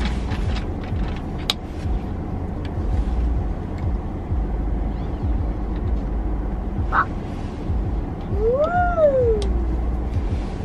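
Steady low rumble inside an SUV cabin, with small clicks and knocks as a metal travel mug is handled and drunk from. Shortly before the end comes one short pitched call, about a second long, that rises and then falls.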